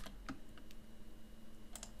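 A few faint clicks of a computer mouse, two close together near the end, over a low steady hum.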